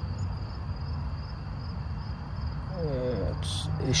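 Crickets chirping steadily over a low background rumble.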